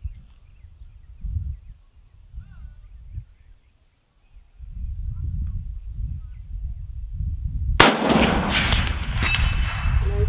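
Wind rumbling on the microphone, then about eight seconds in a single shot from a .30-06 M1 Garand sniper rifle (USMC MC1), loud and echoing. A short metallic ring follows within about a second, as the shot scores a hit on the steel plate.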